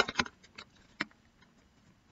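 A few short, light clicks of tarot cards being handled and lined up, with one sharper click about a second in.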